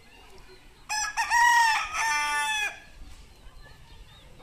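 Rooster crowing once, a loud cock-a-doodle-doo of about two seconds in several joined phrases, starting about a second in.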